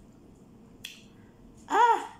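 A woman's short, high-pitched vocal cry that rises and falls in pitch, a reaction to the burn of very spicy noodles, near the end. A single sharp click comes about a second in.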